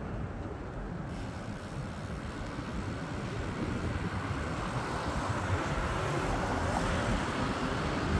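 Steady road and traffic noise heard from a moving bicycle on a cracked town street, slowly growing louder as a car drives toward the bike near the end.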